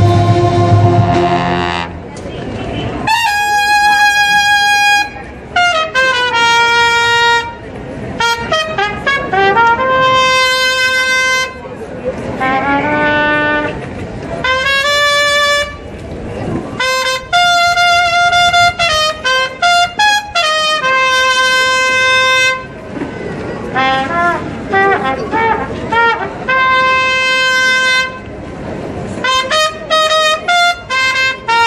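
A brass band holding a full chord that cuts off about two seconds in, followed by a solo brass line of long held notes played one at a time, some with slides and wavering between them.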